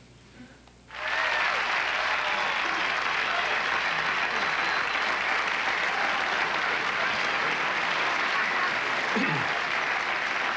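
Studio audience applauding. It starts suddenly about a second in and holds steady.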